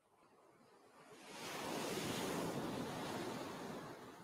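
Ocean surf: a single wave swells in and washes up the beach. The rushing noise builds over the first two seconds, then fades away near the end.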